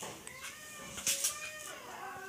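A cat meowing: one long meow that wavers in pitch, with a couple of faint clicks of handling noise.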